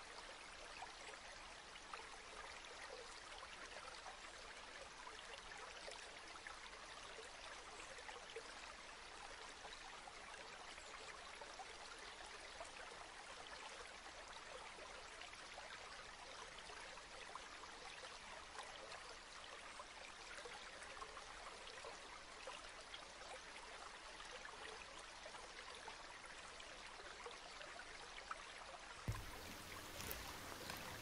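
Faint, steady sound of a flowing stream with fine trickling, a nature-sound bed with no voice over it.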